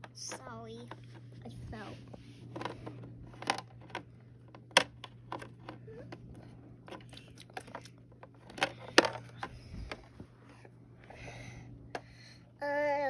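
Small plastic toy figures being set down and knocked against a plastic toy house, giving sharp clicks and taps scattered through, the loudest about halfway and about three-quarters through, over a steady low hum, with brief quiet child vocal sounds near the start.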